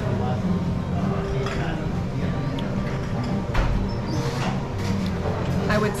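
Busy taproom room tone: indistinct voices of other people in the background over a steady low hum. A single sharp knock comes about three and a half seconds in.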